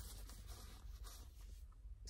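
Faint rustling and brushing of a hand handling a quilted nylon Kipling handbag, the rustles thinning out shortly before the end.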